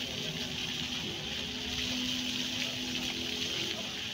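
Musical fountain's many water jets spraying and splashing onto the wet paving in a steady rush, with faint held low notes underneath that break briefly about a second in and near the end.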